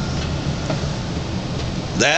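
Steady background noise of the recording, a low hum with hiss and a few faint ticks, in the gap after a piano phrase has died away.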